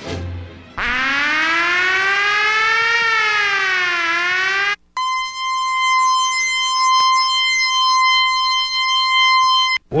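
Electronic music made of siren-like effects. A buzzy pitched tone slowly rises, falls and rises again for about four seconds. It cuts off abruptly, and after a brief gap a steady high, buzzy tone holds for about five seconds.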